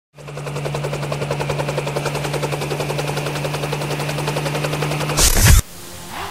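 Intro sound effect: a fast, even rattle over a steady low hum, ending about five seconds in with a short, loud hit that cuts off suddenly.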